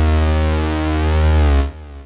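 Roland JD-XA synthesizer playing a preset: one sustained deep, bass-heavy note with a bright, buzzy upper edge. It stops sharply near the end, leaving a faint tail.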